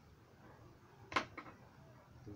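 A metal spatula set down on a wooden bench: one sharp clack about a second in, then a smaller click just after.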